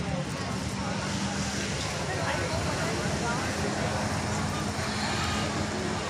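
A steady low engine drone, with people's voices chattering in the background.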